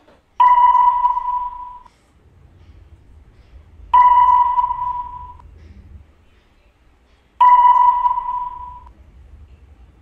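A single electronic pitched tone sounding three times, evenly spaced about three and a half seconds apart; each starts suddenly and fades away over about a second and a half.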